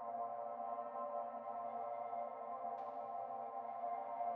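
Quiet ambient background music: a steady bed of soft, held synthesizer-like tones, with a faint brief brighter touch about three seconds in.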